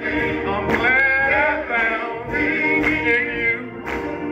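A male gospel chorus singing, backed by organ and a drum kit whose strikes come through at a steady beat.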